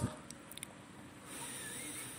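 Quiet room tone with a few faint light clicks from a smartphone's middle frame and flex cable being handled and pressed by hand.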